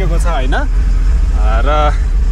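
Truck running along a dirt road, heard from inside the cab as a steady low rumble, with a man's voice talking over it in two short bursts.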